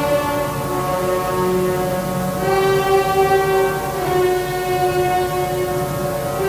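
Symphony orchestra playing held, sustained chords that change about two and a half seconds in and again at about four seconds.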